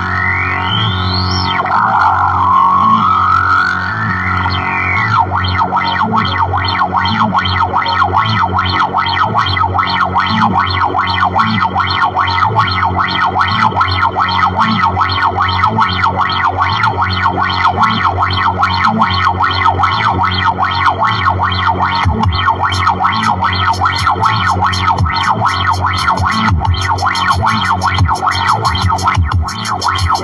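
Electric guitar played through effects with distortion: two rising pitch sweeps in the first few seconds, then a rapid, even pulsing texture over a repeating low line.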